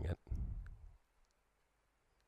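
A man's speaking voice trailing off on the last word of a slow phrase in the first second, then silence.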